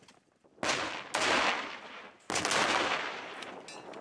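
Gunfire and explosions from a staged battle scene on a war-film set: a sudden loud blast about half a second in, a second soon after, and a third about two seconds in, each dying away over about a second.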